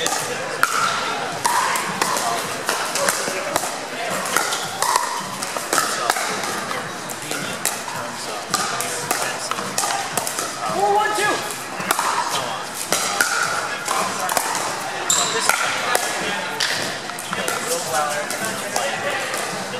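Pickleball paddles hitting the hollow plastic ball: sharp pops at irregular intervals, echoing in a large hall, over a steady murmur of spectators' voices.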